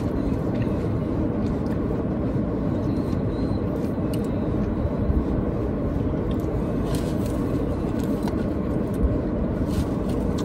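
Steady low rumble of a parked car's running engine heard inside the cabin, with a few soft clicks from handling the food containers.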